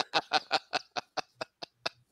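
A man snickering: a run of short breathy laugh pulses, about five a second, fading away toward the end.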